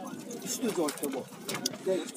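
Faint voices of people talking in the background, with a few light clicks.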